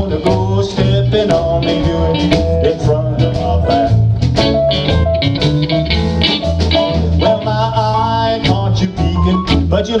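A live country band playing a honky-tonk song: drums keeping a steady beat, a bass line pulsing underneath, electric guitar and keyboard filling between the vocal lines. A sung line comes in right at the end.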